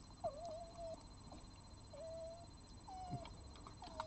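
A cat giving a run of short, drawn-out mewing calls, about four of them, each around half a second long and held at one pitch with a slight waver, faint.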